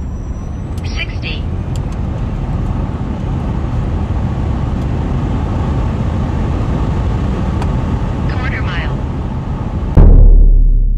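Cabin noise inside a Tesla Model S Plaid under full acceleration at high speed: a steady wind and road roar that builds over the first few seconds and then holds. Two brief higher-pitched sounds cut through, about a second in and again near the end.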